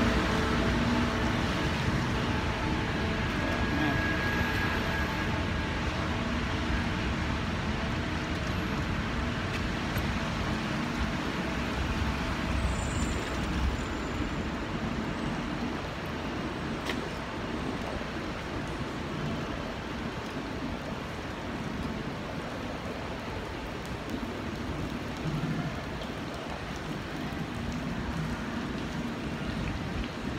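Steady rushing noise of travel along a rain-wet street: tyres hissing on wet pavement and wind, over a low rumble of traffic.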